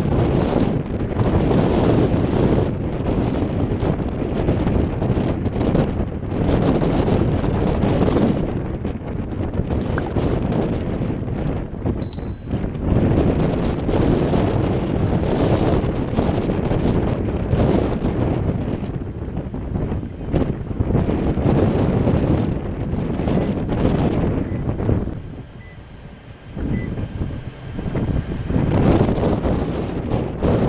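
Wind buffeting the microphone in loud, uneven gusts. A brief high whistle sounds about twelve seconds in, and the wind drops to a lull for a few seconds near the end.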